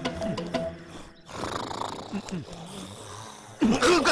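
Film-soundtrack audio of low, rough snoring-like vocal sounds over faint background music, then a man's loud voice breaking in near the end.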